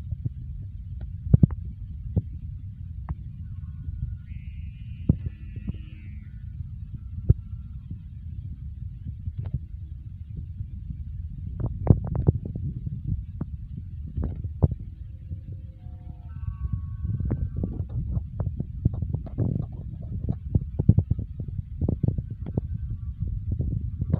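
Strong wind buffeting a phone's microphone in a steady low rumble, with scattered knocks and clicks of the phone being handled, which come thicker in the last third.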